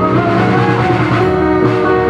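Live pop song played by a small band: sustained Nord Electro 3 keyboard chords with plucked strings, held at a steady level.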